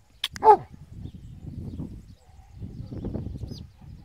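A Spanish mastiff gives one short, loud bark about half a second in, followed by low rumbling noise.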